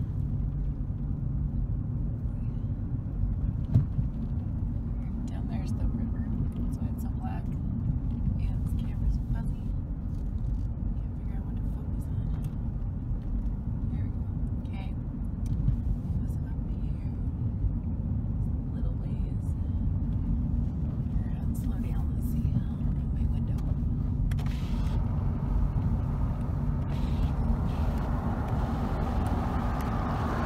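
Car cabin noise while driving: a steady low rumble from the tyres and engine, with scattered small clicks.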